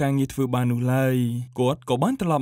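A voice narrating in Khmer in continuous speech, with short pauses between phrases.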